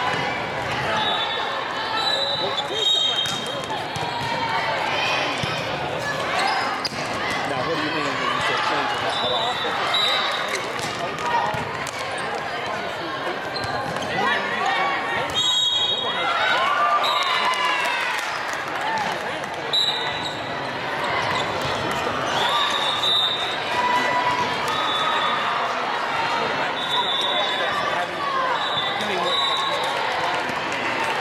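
Indoor volleyball play in a large, echoing hall: a volleyball being struck a few times, with players' shoes squeaking briefly on the sport-court floor and players and onlookers calling out and chattering.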